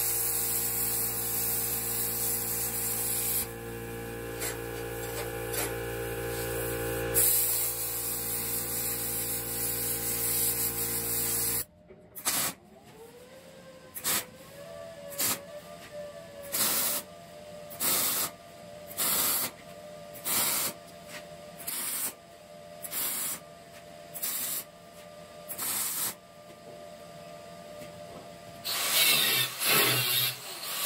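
Plasma cutter cutting quarter-inch steel plate with a steady hiss and hum, stopping suddenly about twelve seconds in. Then about fifteen short welding bursts, each under a second, at roughly one a second. Near the end an angle grinder starts on the steel.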